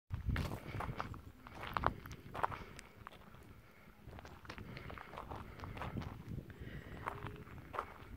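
Footsteps crunching on a loose gravel path, an irregular series of steps.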